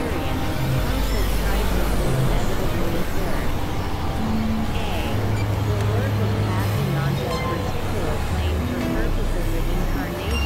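Experimental electronic noise music from synthesizers: a dense, unbroken wash of layered drones, with low sustained tones that change pitch every second or so and many short gliding tones above them.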